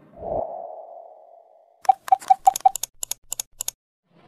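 Sound effects of an animated video intro. A soft thud with a fading tone comes first. Then, about two seconds in, comes a quick run of about a dozen sharp clicks, roughly five a second, and the first five carry a short beep.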